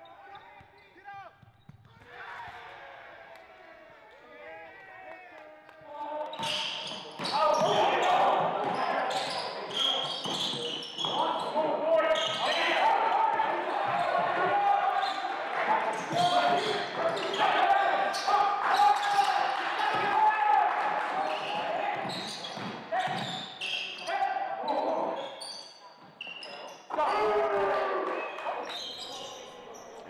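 Live sound of a basketball game in a gym: a ball bouncing on the hardwood court amid the voices of players and spectators, much louder from about six seconds in.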